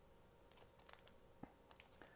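Faint crinkles and ticks of a foil trading-card pack wrapper being handled between the fingers, a few small crackles scattered through the second half.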